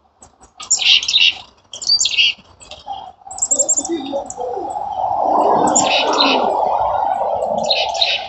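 Small songbirds giving short, high chirping calls in about five bursts, one of them a quick run of very high notes about three seconds in. From about midway a steady, lower-pitched noise swells up beneath the calls and is the loudest sound until near the end.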